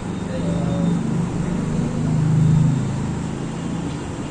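Low, indistinct voices talking off the microphone over a steady low rumble of room noise.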